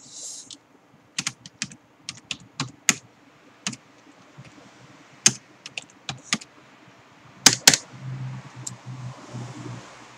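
Typing on a computer keyboard: irregular key clicks in short runs, with two louder clacks about three-quarters of the way through.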